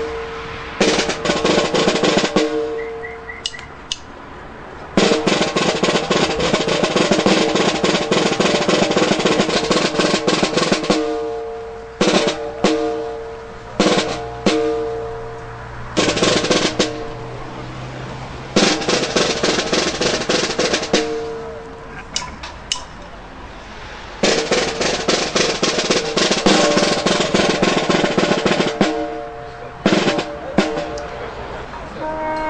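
Snare drum playing a ceremonial drum roll. It comes in several rolls of a few seconds each, the longest about six seconds, with short bursts and brief gaps between them.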